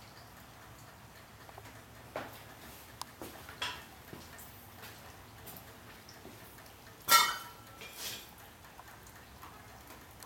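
Scattered metallic knocks and clanks from the diamond-plate metal deck and its upright tailgate panel being handled. The loudest clank, about seven seconds in, rings briefly.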